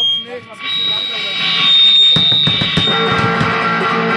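High steady feedback whine from the band's amplifiers, then a few drum hits about two seconds in, with electric guitar and bass coming in as the song starts near the end.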